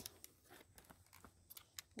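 Near silence with a few faint, short clicks from hands handling a detached horse-clipper blade.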